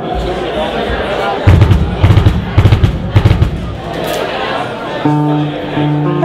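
A drum kit struck in a run of about ten loud low hits, then, about five seconds in, held electric bass and guitar notes begin sounding, over murmuring crowd chatter.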